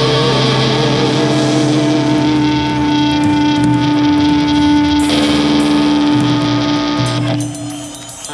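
Live rock band playing an instrumental passage led by electric guitar, with long held notes ringing over the band. The music thins out briefly near the end before the next chords come in.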